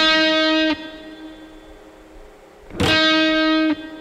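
Electric guitar (an Epiphone SG) picking a single note on the eighth fret, a short honk held for under a second. It rests, then hits the same note again near the end.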